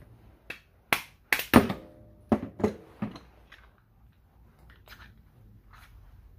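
Sharp clicks and clinks of small metal and plastic parts and hand tools as a stove control switch is pried apart by hand, about half a dozen in the first three and a half seconds, then only faint ticks.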